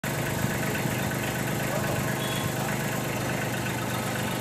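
Kubota B2441 compact tractor's three-cylinder diesel engine idling steadily.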